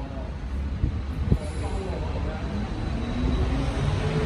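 Low, steady rumble of city background noise with faint voices, and a single sharp knock about a second in.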